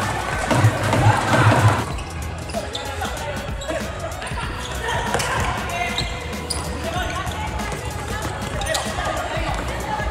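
Futsal match play on a wooden sports-hall court: the ball knocking and bouncing off feet and floor among players' shouts in the hall. The voices are loudest in the first two seconds.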